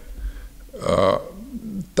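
A man's wordless hesitation sound, about a second long, in the middle of a pause between spoken phrases.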